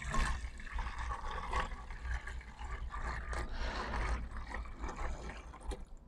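Water-based insecticide solution poured from a plastic tub into the narrow neck of a 2-litre plastic bottle, a quiet steady trickle of liquid into the bottle that thins near the end.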